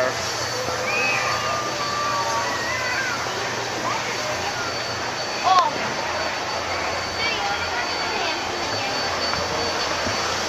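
Scattered voices of people chatting on an open deck over a steady rushing background and a low hum, with one louder voice about five and a half seconds in.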